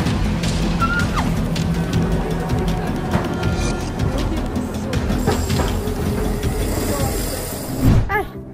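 Music with dense rattling and clattering throughout, ending in a loud hit just before it cuts off.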